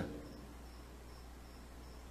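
Faint insect chirping: short, high-pitched chirps repeating evenly about two and a half times a second, over a steady low hum.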